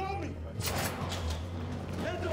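Action-film soundtrack: a low, steady droning score under a brief bit of dialogue at the start, then a run of faint clicks and rustles.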